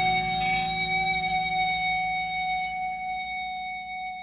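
Closing chord of an indie rock song ringing out on guitars and bass, held and slowly dying away with no drums.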